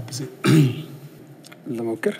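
A man's voice in two short spoken bursts, the louder one about half a second in and a shorter one near the end.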